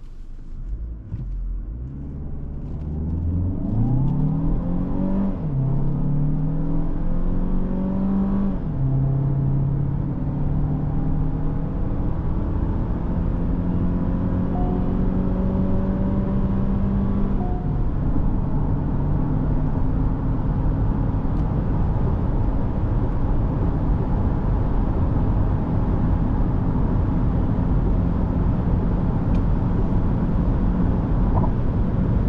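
Chery Tiggo 8 Pro Max engine under hard acceleration, its note rising through the gears with upshifts about five, nine and eighteen seconds in. After that it runs steadily at speed under constant tyre and wind noise.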